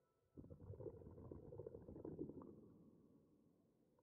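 Faint rubbing and rustling of a cotton swab being worked in a dog's ear. It starts about half a second in, lasts about two seconds, then fades.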